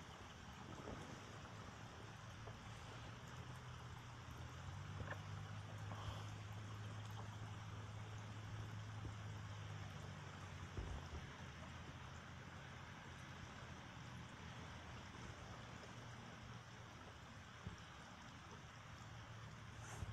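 Heavy rain pouring down, heard as a faint, steady hiss. A low steady hum sits under it for several seconds in the middle.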